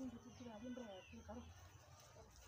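Faint talking voices, quiet and a little distant, with a thin high-pitched sound in the background.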